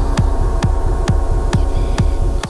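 Techno in a DJ mix: a steady four-on-the-floor kick drum, a little over two beats a second, each kick dropping in pitch, under a held synth drone of several steady tones.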